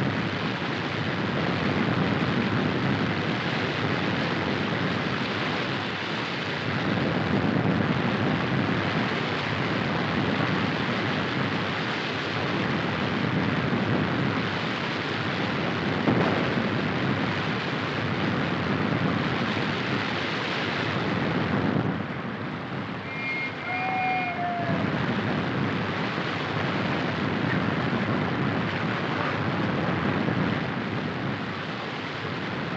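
Rushing water of a waterfall in spate in a rocky gully, a loud steady wash that swells and fades. There is a single thump about halfway through, and the water sound drops briefly near two-thirds of the way, when a short high whistle-like call sounds.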